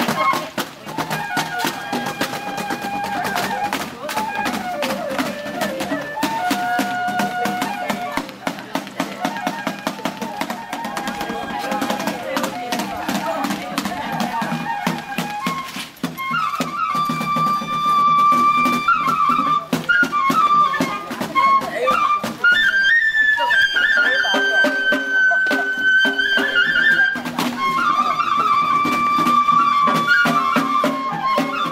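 Japanese festival music for a shishimai lion dance: a bamboo transverse flute plays a melody of long held notes over fast, steady percussion. The flute is more prominent in the second half.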